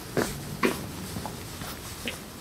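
Hurried footsteps on a paved street, two steps about half a second apart.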